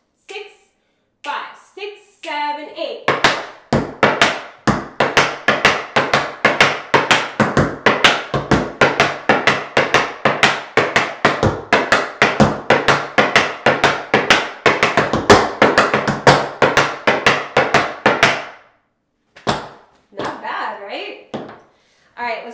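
Tap shoes on a wooden tap board: a long, continuous run of quick, crisp taps, many to the second, with no music. These are flaps, shuffles, heels and weightless stomps danced in a steady rhythm. The taps start about three seconds in and stop a few seconds before the end.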